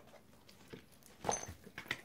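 Soft handling of a deck of oracle cards being shuffled and a card drawn: a few short clicks and rustles, mostly in the second half.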